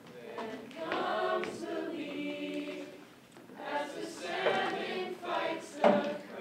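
A stage cast singing together in chorus, several voices holding and shifting sung notes with little or no accompaniment. A sharp knock sounds just before the end.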